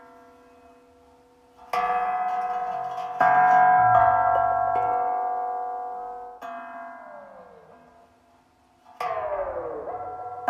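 Improvised electronic music: synthesizer bell-like tones strike four times and ring out slowly, the later ones sliding downward in pitch as they fade.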